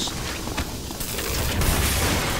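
Cartoon sound effect of the camper RV malfunctioning after a bad cable connection: a fast run of crackling pops over a low rumble, growing fuller about a second in.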